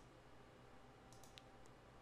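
Near silence with a few faint computer mouse clicks about a second and a half in.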